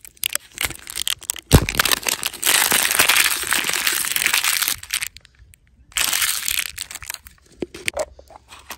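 A printed paper wrap being torn and crumpled off a clear plastic surprise-egg capsule: a few plastic clicks and one loud knock about a second and a half in, then a long spell of crinkling and a shorter one about six seconds in.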